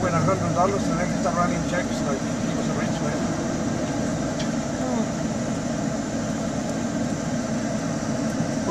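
Steady hum of a car idling, heard from inside the cabin, with faint low voices.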